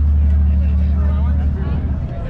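Steady low hum of an idling boat engine, loosening slightly near the end, with faint voices of people talking over it.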